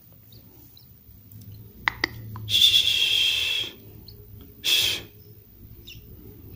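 Nestling bar-winged prinias (ciblek sawah) begging in the nest, the sign that a chick is still hungry after hand-feeding. After a couple of light clicks comes a high, buzzy begging call lasting about a second, then a shorter one about a second later.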